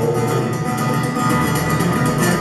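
Steel-string acoustic guitar strummed in a steady rhythm, played live as an instrumental stretch between sung lines.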